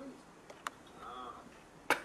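Two sharp clicks: a faint one a little past half a second in and a louder one just before the end, with a brief faint voice sound between them.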